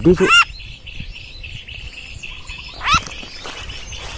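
A small bird giving harsh rising squawks, once right at the start and again about three seconds in, with faint rapid chirping between; the calls of a bird just caught on a glue stick and being held.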